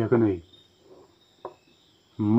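Crickets chirping steadily in the background. A man's voice cuts in briefly at the start, and there is a single faint click about one and a half seconds in.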